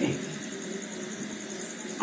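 A pause in the speech: low, steady background noise through the sound system, with a faint high pulsing at a few beats a second.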